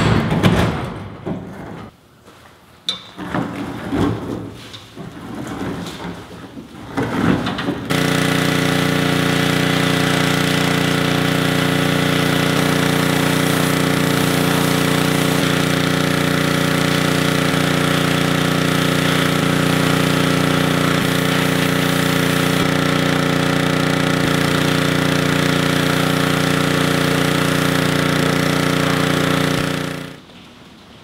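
Irregular rattles and knocks for the first several seconds, then about eight seconds in a pressure washer comes in suddenly and runs steadily: a droning hum with the hiss of its water jet spraying a bare car body.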